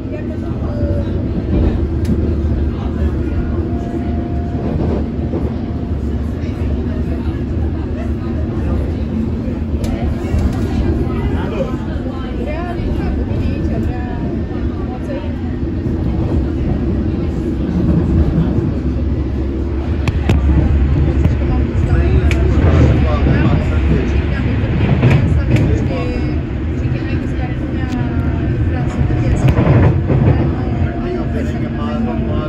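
London Underground District line train running at speed, heard from inside the carriage: a steady low rumble that grows louder about two-thirds of the way through, with voices over it.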